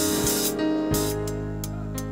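Live church band music: held chords over a sustained bass note.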